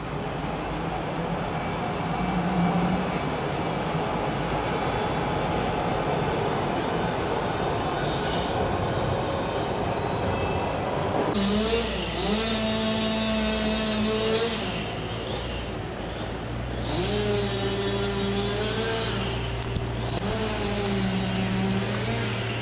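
A tram running past on a city street, with steady traffic noise. About halfway through, the noise gives way to steady low tones that glide up and down.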